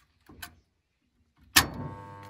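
Green start button of an electric motor starter pressed with a light click, then about one and a half seconds in the contactor pulls in with a loud clack and a steady electrical hum sets in.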